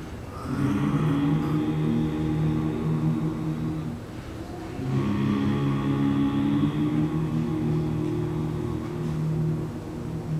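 Seven-man a cappella vocal ensemble singing long held chords in close harmony, in two phrases with a short break about four seconds in.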